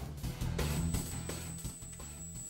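Quiet background music carried mostly by steady low bass notes. A thin, steady high-pitched whine starts about half a second in.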